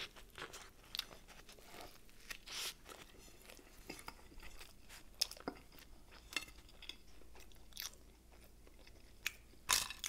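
Close-miked chewing of a bite of meatball sandwich on an Italian roll, with many small crunches scattered throughout and a louder crunch near the end as another bite is taken.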